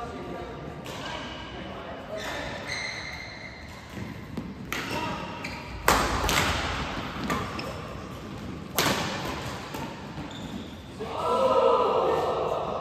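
Badminton rackets striking the shuttlecock in a doubles rally, a series of sharp hits spaced a second or more apart, the loudest about six seconds in and another near nine seconds, echoing in a large hall. Players' voices come between the shots, with a loud call near the end.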